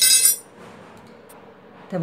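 Steel hand tools clink against each other on a hard floor, a single bright metallic ring that dies away within half a second, then only quiet room background with one faint click.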